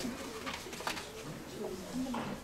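Faint, indistinct murmured voices in a hall, with a couple of light clicks.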